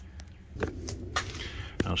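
A few short, sharp clicks and light scuffing steps, the handling and footfall of someone moving around beside a truck frame. A man's voice starts right at the end.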